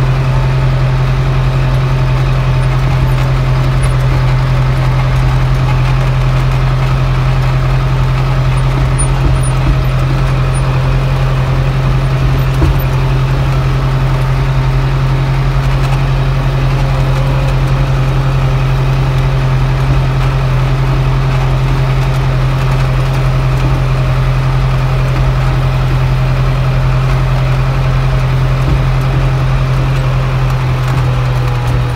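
Tractor engine running at a steady speed while the tractor with its front loader is driven along, heard from the driver's seat as a loud, constant low hum.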